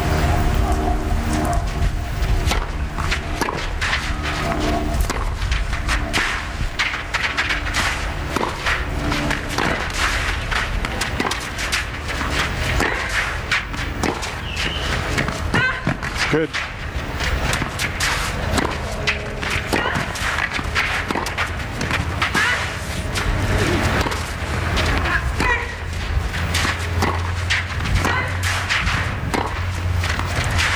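Tennis rallies: the ball struck by rackets again and again in sharp hits, with bounces, footfalls on the court and crowd noise over a low steady hum.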